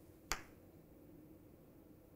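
A single short, sharp click about a third of a second in, otherwise near silence.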